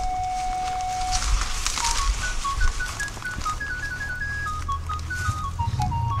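Background music: one note held for about a second, then a slow melody of short, high single notes.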